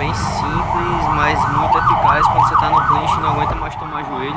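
Emergency vehicle siren in fast yelp mode, its pitch sweeping up and down about four times a second, loudest in the middle and fading near the end, over a low traffic rumble.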